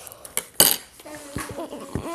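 Metal spoon clinking against a cereal bowl, with a few light clicks and one loud ringing clink about half a second in. From about a second in, a closed-mouth hum from the person eating comes in.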